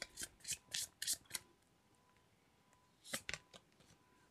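Tarot cards being shuffled by hand: a quick run of about six soft swishes of card sliding against card, then a pause, then three more brief swishes near the end as a card is pulled from the deck.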